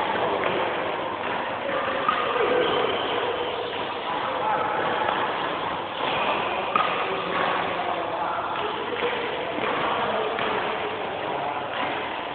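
Continuous hubbub of voices in a busy badminton hall, with a few sharp knocks about two seconds in and again around six to seven seconds in.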